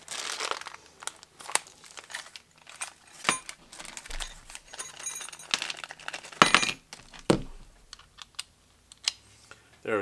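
Clear plastic packaging bag crinkling in irregular bursts as a small part is unwrapped, mixed with clicks and knocks from handling a cordless impact wrench and screwdriver on a bench mat. The crinkling is strongest near the start and around five to six and a half seconds in, with a sharp knock just after seven seconds.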